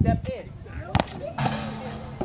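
Basketball being caught in the hands: two sharp smacks, at the start and about a second in, with faint voices and a short burst of hiss near the end.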